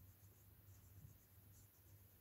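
Near silence: faint, light scratching of a fine paintbrush stroking a vinyl reborn doll head, in many short strokes over a low steady hum.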